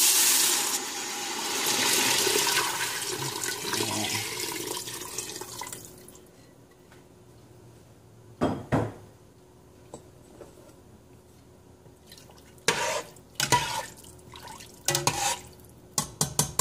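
Rice-washing water poured into a stainless-steel soup pot over sautéed onion, garlic and ginger: a rushing pour that fades away over the first six seconds. In the second half a metal slotted spoon knocks against the pot a few times.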